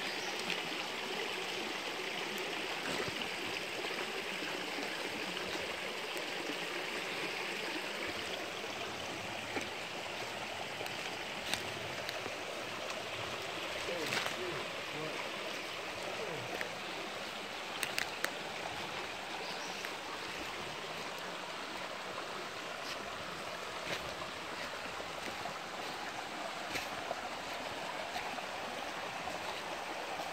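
A small woodland creek running over a limestone bed, a steady rush of water throughout. A few sharp clicks of footsteps on the leafy bank.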